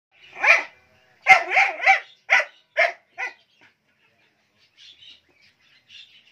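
A tan short-haired dog barking behind a wire gate: about seven short barks in the first three seconds, one, then three in quick succession, then three more spaced out and growing fainter. Faint high chirps follow near the end.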